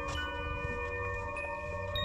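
Eerie chime music: several bell-like tones ring on and overlap, with a new note struck just after the start and another near the end, over a low rumble.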